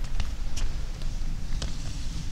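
Low rumble of a handheld camera being moved about, with three short sharp clicks.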